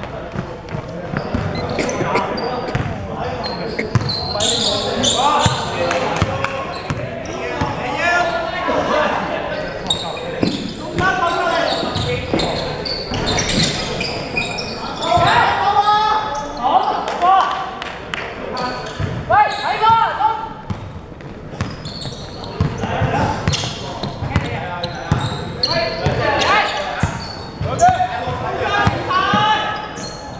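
A basketball bouncing on a hardwood gym floor during a game, with players' voices calling out across the court, all echoing in a large indoor hall.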